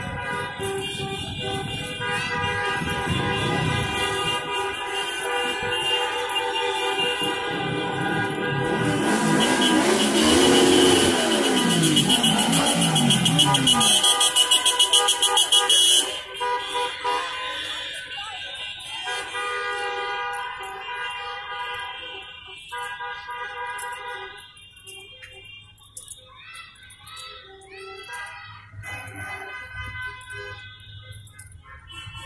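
Car horns honking from a slow street procession of cars, several long held tones overlapping. A loud rough noise swells for several seconds and cuts off suddenly about halfway through.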